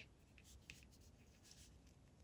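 Near silence with a few faint, brief ticks and scratches of wooden knitting needles and yarn rubbing as stitches are knitted off a cable needle.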